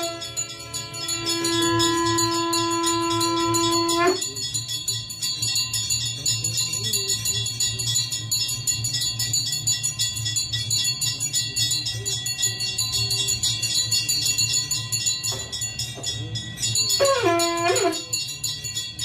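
Brass hand bell rung rapidly and without pause for the aarti. Over it a conch shell is blown in one long steady note that stops about four seconds in, and it sounds again with a wavering note near the end.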